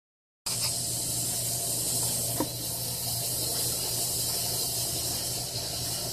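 Steady hiss over a low, even hum, starting abruptly about half a second in: the background noise of a garage with running refrigerators and a fish tank.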